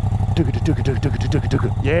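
Moto Guzzi V100 Mandello's 1042 cc 90-degree transverse V-twin idling steadily just after being started, a low, burly beat.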